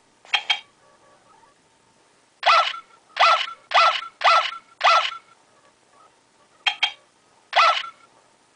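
i-dog Amp'd robot toy dog giving a series of short electronic barks from its speaker as its head is touched: a quick pair at the start, five in a row about every half second, then two more near the end.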